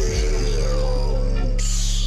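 Hip-hop beat instrumental: a deep, steady bass and a sustained melody, with a low kick thump at the start. Near the end comes a short burst of high hiss that cuts off abruptly.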